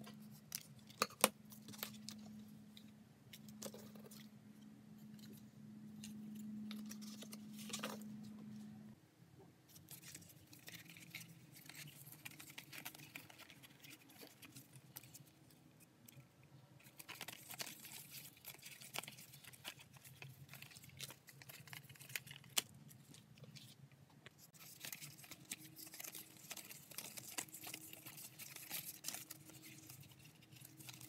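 Scissors snipping through card stock at the start, over a steady low hum that stops about nine seconds in. Later, sheets of cut card and thin brass foil rustle and crinkle as they are handled, loudest in the last few seconds.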